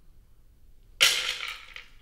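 A handful of dry dog kibble dropped into the plastic food tank of an automatic pet feeder: a sudden rattle about a second in that dies away within a second.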